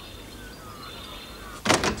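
Low background ambience with faint high bird chirps, then a sudden loud door opening near the end.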